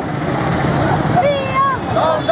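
Protesters shouting a slogan together in high, strained voices, the shout starting a little over a second in, over a steady background of street traffic and crowd noise.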